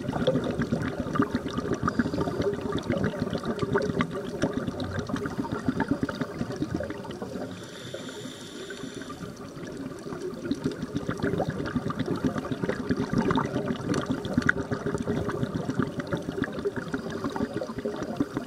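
Underwater recording of a scuba diver's regulator: dense bubbling and crackling from exhaled bubbles that swells and eases, with a short hiss of an inhaled breath a little before the middle.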